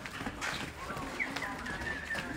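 Hooves of a small herd of young cattle, Aberdeen Angus among them, clopping irregularly on a paved lane as they walk.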